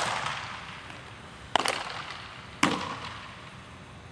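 Two sharp pops of baseballs smacking into catchers' leather mitts, about a second and a half and two and a half seconds in, each ringing out in the echo of a large indoor hall.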